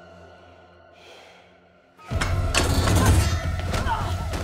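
Quiet, fading score, then about halfway through a sudden loud crash as a fight breaks out: a scuffle of thuds and knocks with a strained cry near the end, over a low rumble of music.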